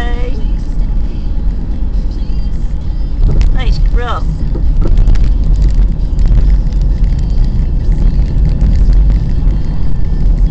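Car being driven, heard from inside the cabin: a steady, loud low rumble of engine and road noise, with a few brief sliding whistle-like sweeps about three to four seconds in.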